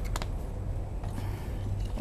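Low, steady rumble of road traffic crossing the bridge overhead, with a couple of faint clicks just after the start.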